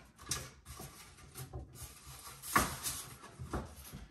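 Scattered plastic clicks and knocks of a new Bosch French-door refrigerator's interior shelves and bins being handled and fitted, with the loudest knock about two and a half seconds in and another about a second later.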